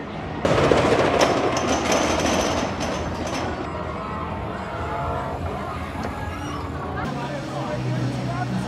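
Loud rumbling rush, as of a roller coaster train running past on its steel track, starting suddenly about half a second in and dying away over about three seconds, leaving a steady background of park noise and distant voices.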